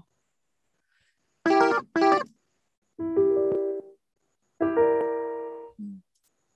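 Software grand piano presets in Arturia Analog Lab being auditioned with a few chords: two short chords about half a second apart, then a longer chord, then one held chord fading away.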